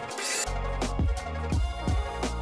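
Background music with a steady beat and sustained bass notes.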